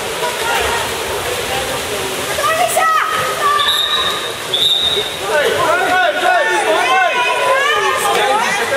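Water polo players splashing, with a steady wash of water noise echoing in a pool hall. Two short, high, steady whistle blasts come about four and five seconds in. Over the last few seconds there are high-pitched shouts and calls.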